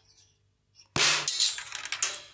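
A steel marble released from the Marble Machine X's marble drop striking the hi-hat cymbal: one sharp metallic clash about a second in, ringing bright and high as it fades, with a smaller hit near the end.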